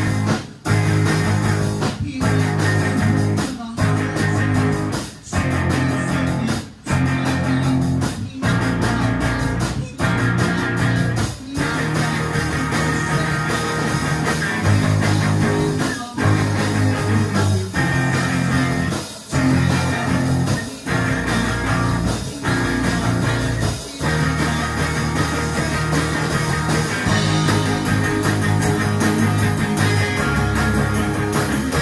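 Rock band playing electric guitar, electric bass and drum kit together. The whole band stops briefly about every second and a half for most of the stretch, then plays straight through near the end.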